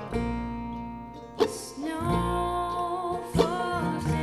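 Acoustic string band playing a slow country song on acoustic guitar, banjo, mandolin and upright bass, with plucked chords sounding every couple of seconds. About halfway through, a woman's voice comes in singing a held, gently wavering line.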